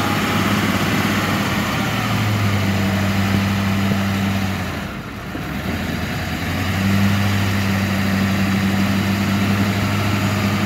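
Diesel dually pickup engine running at steady raised revs as the truck tries to drive out of mud. The revs drop off about five seconds in, then come back on strongly about two seconds later.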